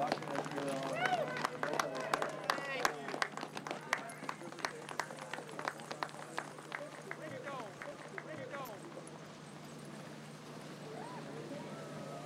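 A sled dog team running past on packed snow, their feet making quick, irregular clicks that thin out after about eight seconds, with people's voices in the first few seconds.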